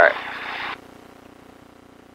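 A short hiss over the headset intercom that cuts off abruptly under a second in, as the intercom's microphone gate closes, then the light aircraft's piston engine running faintly and steadily as heard through the intercom.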